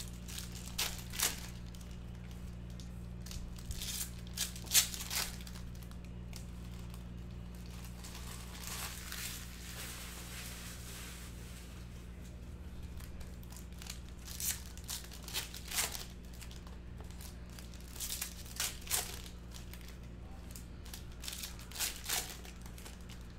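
Foil trading-card pack wrappers crinkling and tearing open in short bursts, the loudest about five seconds in, over a steady low hum.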